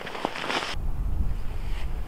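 Wind buffeting the microphone: a steady low rumble that sets in about a second in, after a brief hiss.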